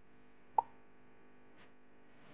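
A single short, sharp pop about half a second in, over faint, steady background music.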